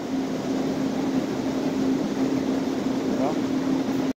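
A steady mechanical hum over an even rushing noise, with a faint voice briefly about three seconds in.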